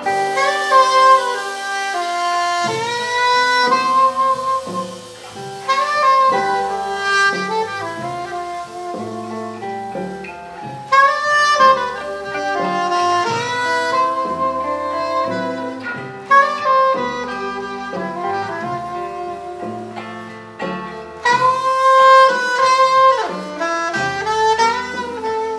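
Live jazz quartet: a soprano saxophone plays the melody in phrases of a few seconds each, over electric guitar, bass guitar and drums.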